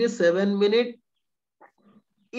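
A person's voice holding a drawn-out, fairly steady vowel-like sound for about the first second, then a pause.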